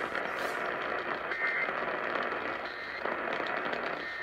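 AM radio tuned to 1130 kHz on a weak signal, putting out steady static hiss with crackle. A brief faint whistle comes through about a second and a half in.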